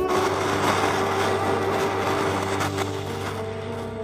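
Jeweler's foot-pumped bellows driving a soldering torch: a steady rushing hiss of air and flame that fades near the end.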